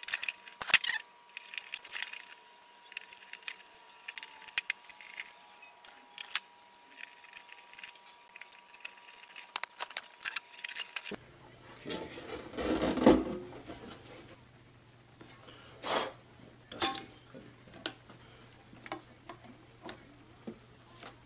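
Screwdriver turning screws into the plastic bottom cover of a turntable, with small clicks and knocks and a faint steady tone in the first half. In the second half come louder knocks and rustling, the loudest about two to three seconds after it begins, as the turntable is handled and a vinyl record laid on its platter.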